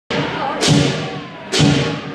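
Lion dance percussion: the big lion drum and hand cymbals struck together in two loud strokes about a second apart, each leaving a ringing tail.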